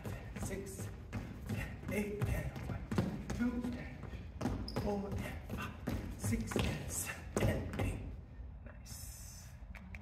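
Sneakers thumping and scuffing on a wooden dance-studio floor as two dancers run through hip-hop footwork, with a man's voice calling along over the steps. The footfalls die away about eight seconds in.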